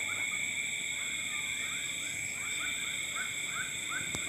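Night insect chorus: steady high-pitched shrill tones, joined from about a second and a half in by a fast run of short chirps, about four a second.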